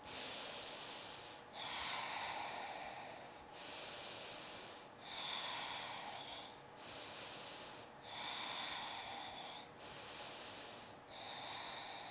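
A woman's slow, even breathing, picked up close by a clip-on microphone: eight airy inhales and exhales in turn, each about a second and a half, as she breathes steadily while holding a yoga pose.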